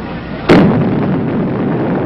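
Blast of the 21-kiloton Dog atomic air burst: a sudden sharp crack about half a second in, then a continuing heavy rumble.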